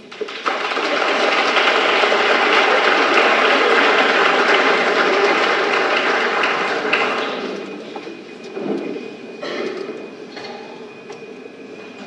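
Audience applauding, full at first, then dying away about seven seconds in to a few scattered claps.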